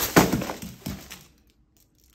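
A battered cardboard piñata slammed down onto a carpeted floor: one sharp hit near the start, then paper and streamers rustling and settling, dying away after about a second.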